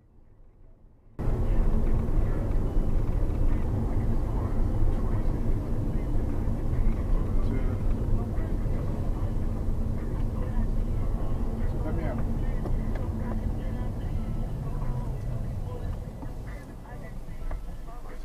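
Car-interior noise while driving: a steady low road and cabin noise that starts abruptly about a second in, with indistinct voices mixed in.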